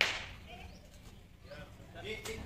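A small firecracker going off with one sharp crack right at the start, its noise dying away within about half a second.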